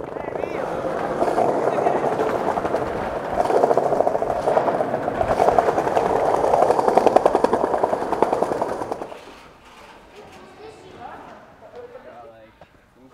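Skateboard wheels rolling over rough street pavement: a loud, gritty, rattling roll that dies away about three-quarters of the way through.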